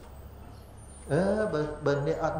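A short pause with only a low steady hum, then a man's voice resumes about a second in, speaking with long, drawn-out syllables.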